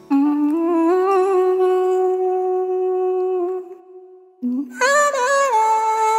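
A woman humming a slow tune in two long phrases of held, gently stepping notes, with a short break just before the fifth second.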